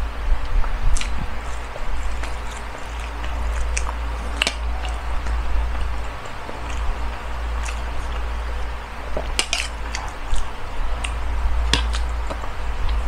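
Close-up chewing of rice and hotdog: wet mouth sounds and a few sharp clicks scattered through, over a steady low rumble.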